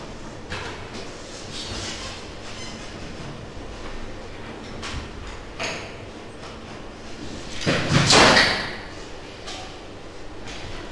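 Faint scattered knocks and rustles, then a loud noisy scrape lasting about a second, about eight seconds in.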